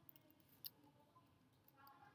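A few faint keystroke clicks on a laptop keyboard as a terminal command is typed, the clearest about two-thirds of a second in.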